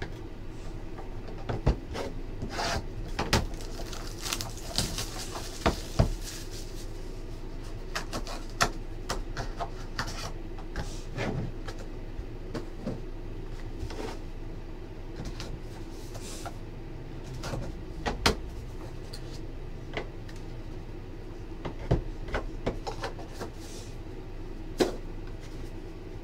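Hands handling Panini Pantheon trading-card boxes and cards on a tabletop: scattered light knocks and taps as the boxes are lifted and set down, with sliding and rubbing between them and a brief rustle about five seconds in.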